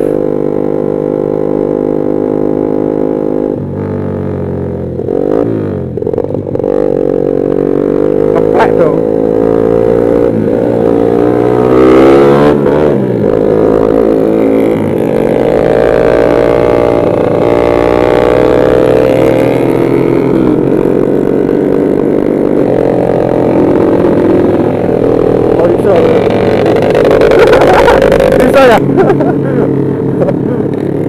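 Honda CB150R motorcycle engine running under way, a steady drone whose pitch dips and climbs again several times with throttle and gear changes, most markedly between about four and seven seconds in.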